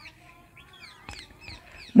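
A small bird chirping faintly in the background: a string of short, falling chirps.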